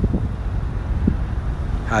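Steady low rumble of road traffic, mixed with wind on the microphone.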